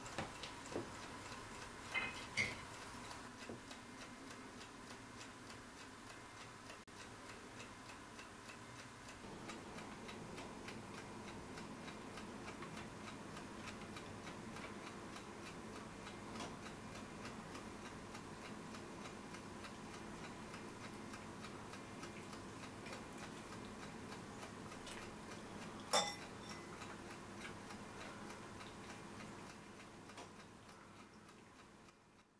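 Faint, steady ticking like a clock, with a few louder clicks and one sharp click near the end.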